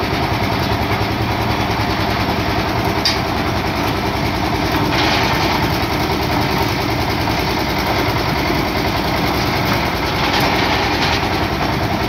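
Concrete mixer-with-lift machine's engine running steadily at constant speed, with one sharp click about three seconds in.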